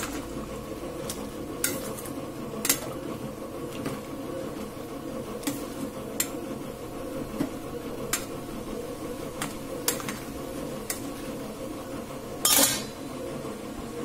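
A metal ladle stirring dried brinjal pieces in a stainless steel pot, clinking against the pot every second or so at irregular intervals. A louder scrape comes near the end, over a steady low background noise.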